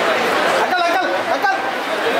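Many people talking at once, a dense chatter of overlapping voices, with one voice standing out clearly for about a second in the middle.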